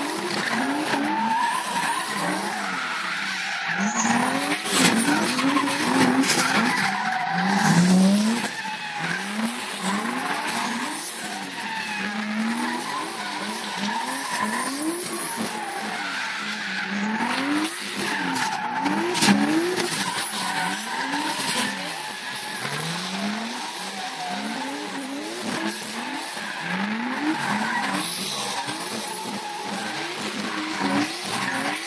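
Drift cars sliding sideways on tarmac: the engines rev up and down over and over as the drivers hold the slides, over a continuous tyre squeal.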